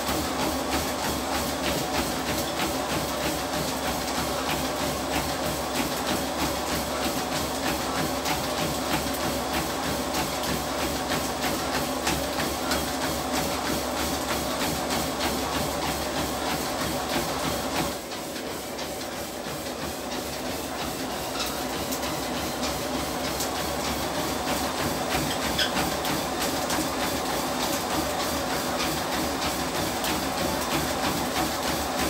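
Home treadmill running steadily, its motor and belt giving a continuous hum under the even, rapid thud of a runner's footfalls. About eighteen seconds in it goes briefly quieter for a few seconds.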